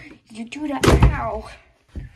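A plastic soap bottle is knocked down onto a rubber bath mat in a bathtub with one loud thump about a second in, with vocal noises around it.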